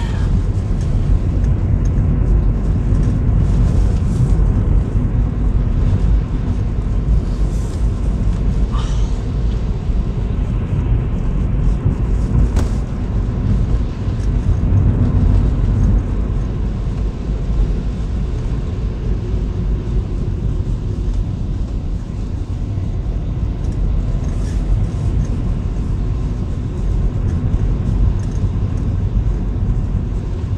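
A car's engine and tyres on wet tarmac, heard from inside the cabin: a steady low rumble, with a few faint knocks from the road.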